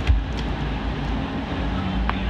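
Steady low rumbling background noise with a few faint clicks.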